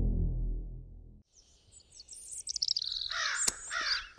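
A low rumbling tail of an intro sting fades out and cuts off about a second in. From about two seconds in, birds chirp busily with quick rising and falling calls.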